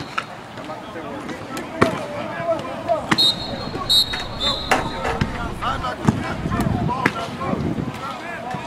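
Sharp smacks of footballs being caught in a passing drill, five or so spread a second or more apart, over players and coaches shouting. Short high whistle tones sound a few times around the middle.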